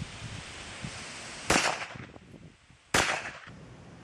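Two pistol shots about a second and a half apart, each a sharp bang with a short tail.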